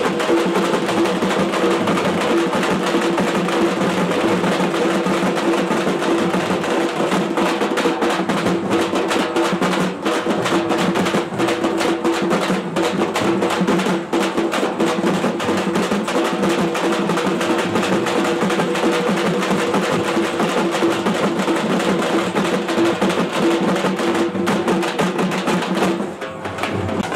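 Processional drums played live in a fast, dense rhythm, with a steady pitched tone held underneath the drumming.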